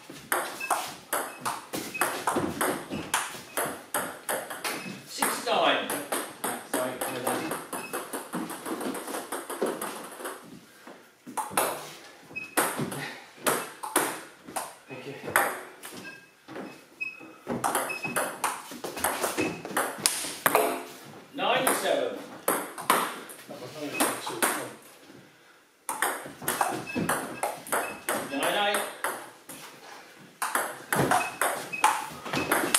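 Table tennis rallies: the celluloid-type ball clicking off the bats and the table in quick, irregular runs, with short breaks between points. Voices are heard now and then.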